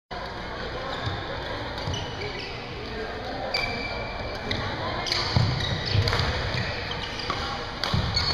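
Badminton doubles rally on an indoor court: several sharp racket hits on the shuttlecock, shoes squeaking on the court floor and footfalls, over the background chatter of the hall.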